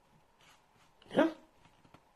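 Mostly quiet room, broken by one short voiced call that falls in pitch a little past a second in.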